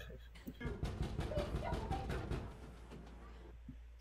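A man's guttural growl of rage, about two seconds long, in the film's audio. A low steady hum runs under it.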